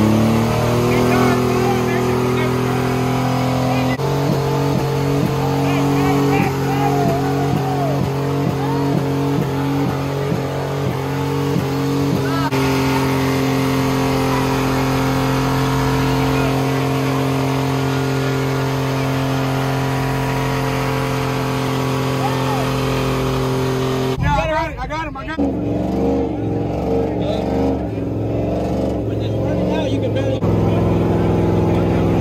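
A vehicle engine held at high, steady revs during a tire burnout, pulsing evenly for a stretch, with crowd voices over it.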